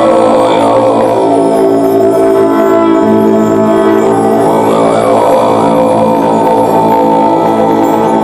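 Live band music: a slow passage of sustained, droning chords held steady.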